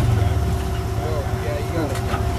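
Rock crawler's engine drops from a loud, working rumble to a low, pulsing idle right at the start, idling as the truck sits on the boulder. Faint voices of onlookers come and go.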